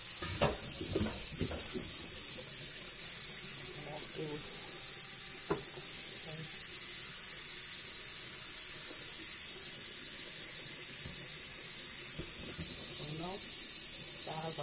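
A steady hiss at an even level, with a few light knocks and clicks from handling at the counter.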